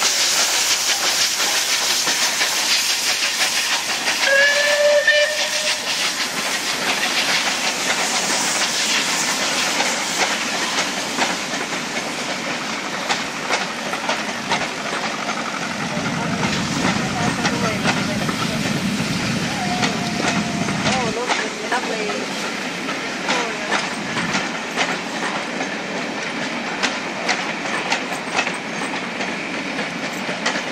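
Southern Railway Battle of Britain class 4-6-2 No. 34067 Tangmere, a three-cylinder steam locomotive, passing close by with a steady hiss of steam. It gives a short whistle blast about four to five seconds in. The coaches then follow, their wheels clicking over the rail joints.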